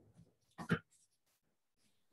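Near-quiet room tone on a video call, broken under a second in by one brief vocal sound from a person, a short voiced noise lasting about a quarter of a second.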